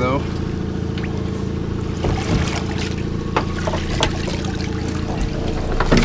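Boat engine idling with a steady low hum, while water trickles and splashes as a wire crab pot is rinsed of mud and lifted out of the water. A few sharp clanks of the wire pot come through.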